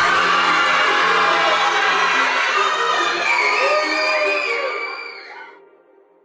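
A crowd of children cheering and shouting together in a large hall, fading away about five seconds in.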